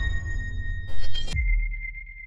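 Logo-reveal sound design: a deep bass rumble with a short rushing burst about a second in, then a single high ringing tone that fades away.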